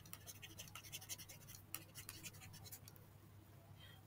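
Faint scratching and light ticking of a stylus nib on a pen tablet as words are handwritten, thinning out in the last second.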